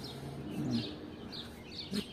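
Small birds chirping in short, scattered calls over a faint, steady outdoor background noise.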